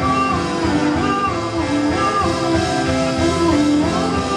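Steinway grand piano played live, with a voice singing over it in long, gliding notes.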